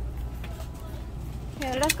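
Electric mobility scooter running as it rolls along, a steady low rumble, with a voice speaking briefly near the end.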